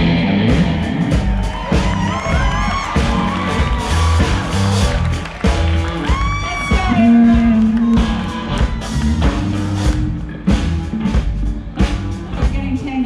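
Live rock band playing: electric guitars and bass over a drum kit keeping a steady beat, with sliding, bending notes above.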